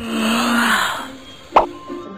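Cartoon sound effects over background music: a swelling, hissy whoosh with a low tone under it for the first second, then a short sharp pop about one and a half seconds in.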